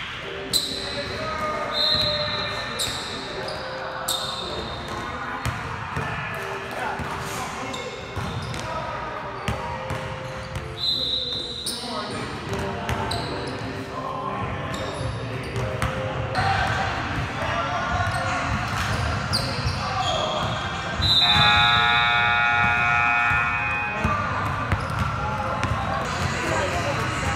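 Basketballs dribbled and bouncing on a hardwood gym floor, irregular thuds echoing in a large hall, mixed with short high squeaks and voices.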